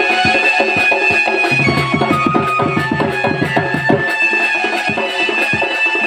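Odia folk music: a double-headed barrel drum played with quick, driving strokes under a nasal reed pipe holding long melody notes that step from one pitch to another every second or two.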